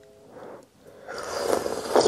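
A person slurping broth off a spoon: a rising, airy sip that builds over about the last second.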